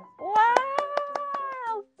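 A woman's long, drawn-out "wow" in a high voice, rising then falling in pitch, crossed by a quick run of sharp clicks.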